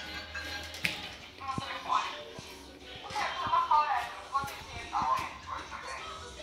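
A television playing a cartoon: background music and voices, with a few short knocks and shuffling close by.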